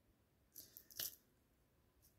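Near silence: room tone in a small room, with a faint short hiss about half a second in and a faint click about a second in.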